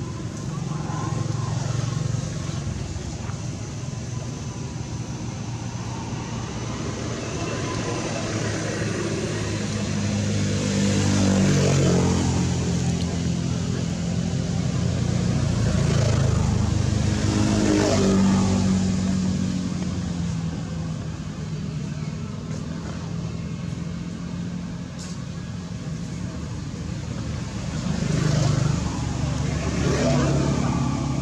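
Motor vehicle engines passing, a low drone that swells and fades about three times as vehicles go by.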